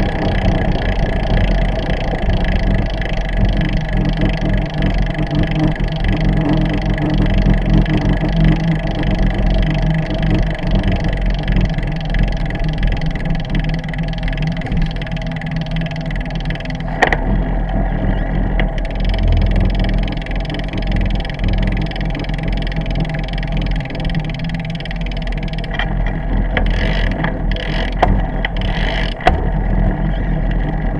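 Steady rumble and wind noise from a fork-mounted camera on a bicycle ridden slowly along a road, with a few sharp clicks or knocks about halfway through and again near the end.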